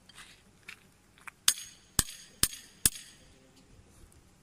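Four sharp knocks about half a second apart from the metal earth-test spike being handled as the megger's P2 test lead is fastened to it.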